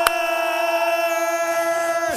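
One long note held at a steady, unwavering pitch, with a single click just after it begins.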